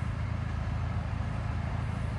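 Steady low mechanical hum, even and unchanging, with no sudden sounds.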